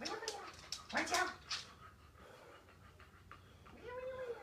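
A dog giving short whining barks: one at the start, another about a second in, and a third at the very end.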